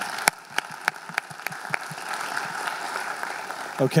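Audience applauding in a lecture hall, a steady patter of many hands, with one nearby clapper's sharp claps standing out at about three a second over the first two seconds.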